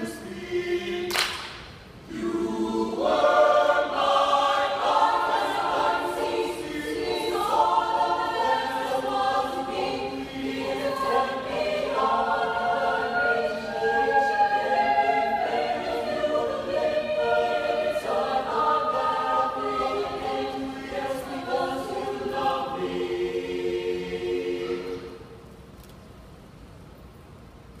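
Mixed choir singing a cappella in harmony, many voices holding chords that change every second or so. A single sharp hit comes about a second in, and the singing stops about a second before the end.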